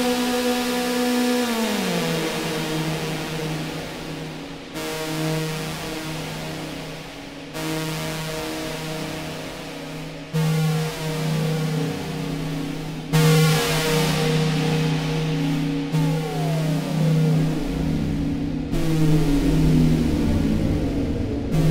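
BC9 electronic noise instrument played through an Eventide effects pedal: a sustained low drone that steps down in pitch about two seconds in, with falling pitch sweeps and bands of hiss that switch on and off abruptly every few seconds. A low rumble comes in near the end.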